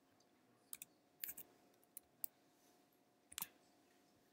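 Faint computer keyboard keystrokes: about nine short clicks in small clusters spread over a few seconds while a value is typed over in a code editor.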